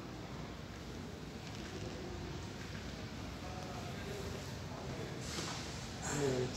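Shop interior ambience: a steady low hum with faint, indistinct voices in the background, and a brief hiss near the end.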